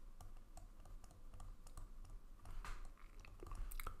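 Faint, irregular clicks and taps of a stylus writing on a tablet screen.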